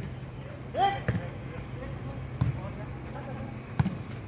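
A volleyball being played back and forth: three sharp smacks of hands on the ball, about a second and a third apart, with a player's shout just before the first.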